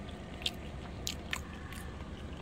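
A person eating creamy macaroni salad: mouth and chewing sounds with a few short sharp clicks, the first about half a second in and two more around a second in.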